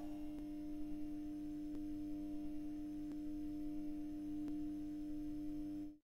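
A steady, held electronic tone with a few quieter overtones and faint ticks about every second and a half, cutting off suddenly at the end.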